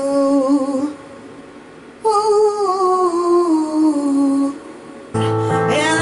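A woman's voice singing two wordless notes into a handheld microphone routed through an echo effects pedal: a short held note, then a longer one sliding down in pitch. About five seconds in, a karaoke backing track starts with bass.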